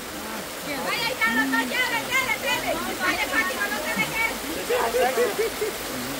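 Steady rush of shallow river water, with voices talking over it from about a second in until near the end.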